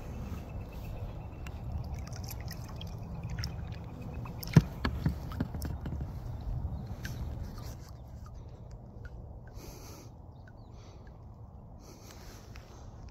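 Water dripping and trickling beside a small boat over a low steady rumble. A sharp knock comes about four and a half seconds in, with a few lighter clicks just after it.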